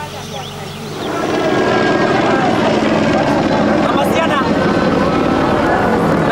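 A Lancia Delta HF Integrale rally car's turbocharged four-cylinder engine comes in about a second in and runs loud and steady as the car approaches on gravel, over many voices shouting.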